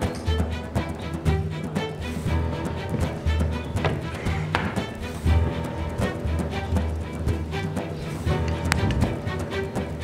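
Music with a pulsing bass line, sustained chords and light tapping percussion.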